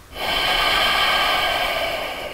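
A man's long, steady audible breath while he holds a plank.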